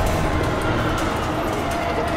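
Sci-fi city sound design: a steady mechanical rumble of transit cars moving on a tower, with trailer music low underneath.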